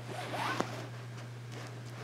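Fingers brushing across the reversible sequins of a pillow cover, a brief faint rustle about half a second in, over a steady low hum.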